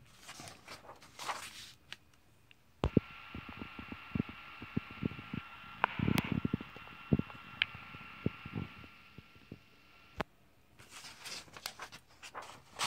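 Paper pages of a comic book rustling as they are turned by hand, once at the start and again near the end. In between, a steady mechanical hum with a faint high whine starts with a click about three seconds in and stops with a click about ten seconds in, with scattered light clicks and a louder rustle around the middle.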